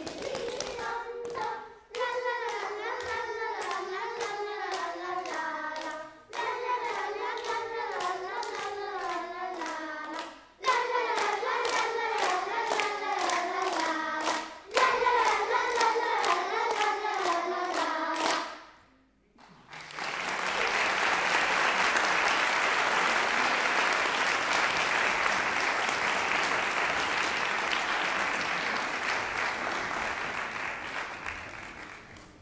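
Children's choir singing a song together while clapping their hands in time, in phrases with short breaks; the song ends about 19 seconds in and audience applause follows.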